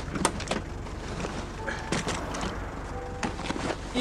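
Black cab engine idling with a steady low hum, and several sharp clicks and knocks from the open rear door and handling inside the cab, just after the start, around the middle and near the end.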